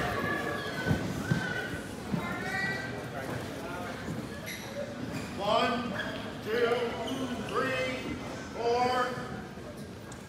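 Voices calling out in a large gym during a wrestling bout, with several drawn-out shouts in the second half. A dull thump comes about a second in.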